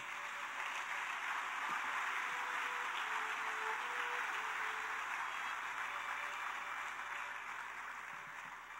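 Congregation applauding steadily, tapering off a little near the end, with a faint violin playing underneath.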